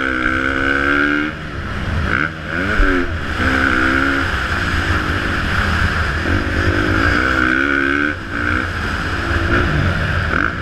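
Motocross bike engine under hard riding, revving up and dropping off again and again as the throttle is opened and shut for jumps and turns, with short lulls when the throttle closes.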